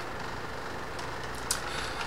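Steady low background hum and hiss of room tone, with one faint short click about one and a half seconds in.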